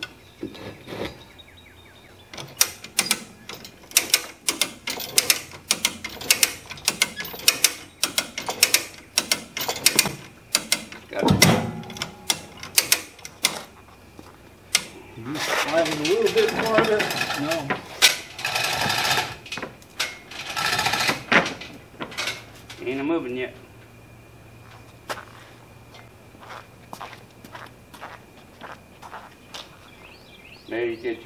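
Hand-operated come-along ratchet clicking in a quick run of sharp clicks, several a second, as its cable is tightened; a heavier knock sounds partway through. Low voices talk in the second half.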